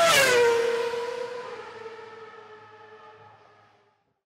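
Logo sting: a swelling synthesized tone that slides down in pitch during the first half second, then holds steady and fades out over about four seconds.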